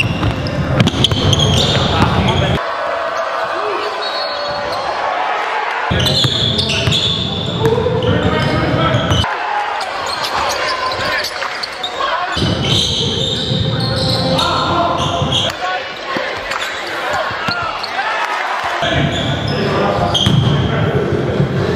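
Basketball dribbled on a hardwood court in a large echoing gym, with voices; the sound changes abruptly every three seconds or so.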